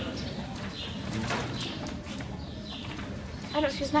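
Background chatter of onlookers with birds calling in repeated short, downward-sliding chirps. A voice rises clearly near the end.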